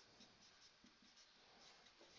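Faint short strokes of a marker pen writing on a whiteboard.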